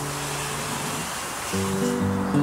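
Classical guitar played fingerstyle: a held chord rings and fades out about a second in, then after a short pause new notes are plucked.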